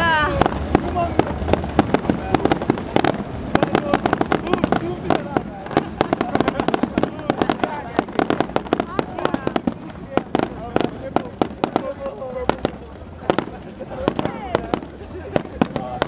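Fireworks display: a rapid, irregular string of bangs and crackles from aerial shells bursting, with a short rising whistle at the very start. People's voices chatter underneath throughout.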